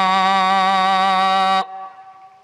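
A man's voice holds one long, steady chanted note of Arabic sermon-opening recitation into a microphone. It cuts off about one and a half seconds in, and a short echo fades after it.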